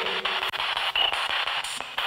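Spirit box sweeping through radio stations: a constant hiss of static chopped by rapid clicks, with a brief thin tone about a second in.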